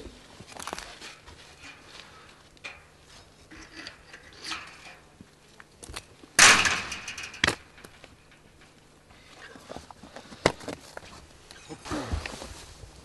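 Handling noises as a captured mouflon is held and hooded with a cloth blindfold: rustling fabric, scuffs and a few sharp knocks, with one loud rough rush of noise about six seconds in and a strong knock just after it.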